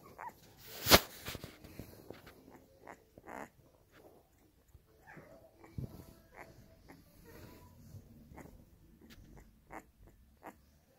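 Newborn puppy making faint small noises: short whimpers and breaths scattered through, with a sharp click about a second in as the loudest sound.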